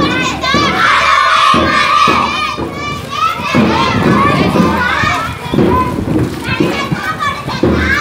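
A crowd of schoolchildren shouting slogans together as they march, many young voices overlapping.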